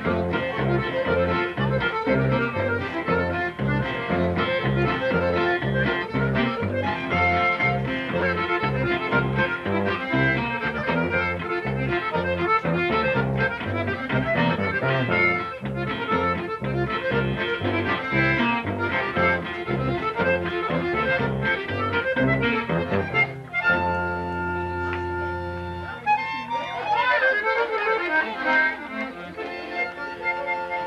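Conjunto music: a button accordion leads a lively tune over a bajo sexto and electric bass, with a steady, pulsing bass line. About 24 seconds in the tune closes on a held chord, and looser accordion notes follow.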